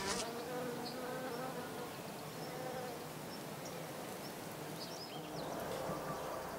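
A bee buzzing: a faint, steady hum that wavers slightly in pitch.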